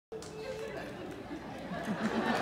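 Audience chatter: several people talking at once, fairly quiet.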